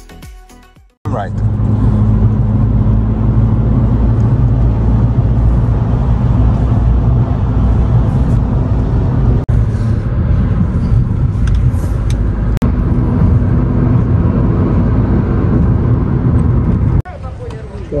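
Loud, steady road and wind noise with a low drone, heard from a moving car. It cuts out very briefly twice and drops away shortly before the end.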